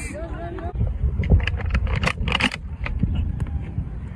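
Indistinct voices of players over a steady low rumble, with a few short faint knocks in the middle.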